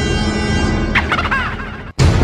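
Background music with steady tones, then about a second in a short, quickly warbling turkey-gobble sound effect of about half a second. The sound fades out and cuts off just before the end.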